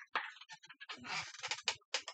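Scraping and a series of short knocks and clatters as objects are handled and moved about on a workbench, busiest about a second in.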